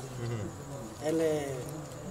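A man talking in conversation, his voice in short phrases with a brief pause in the middle.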